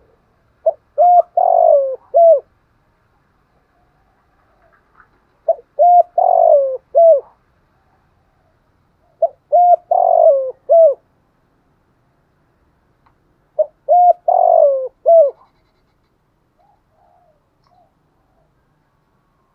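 Spotted dove cooing its song four times, about four seconds apart. Each phrase is a few short coos around a longer falling note.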